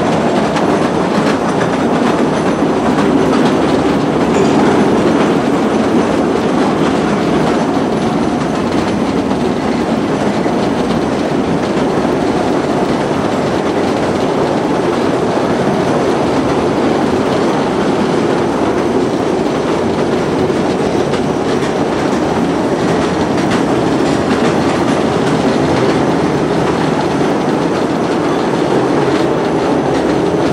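Train running steadily through a tunnel, heard from aboard: a continuous loud rumble and rattle of wheels on rails, closed in by the tunnel walls.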